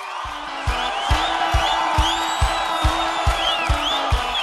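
Live sertanejo concert recording: a crowd cheering and whistling over a steady kick-drum beat of a bit over two strokes a second and a held low note, as a song's intro gets under way.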